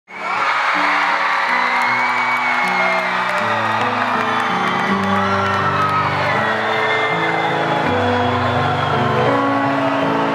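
Live band music that opens with sustained chords, changing every second or so, under a large crowd cheering and whooping. It fades in sharply at the very start.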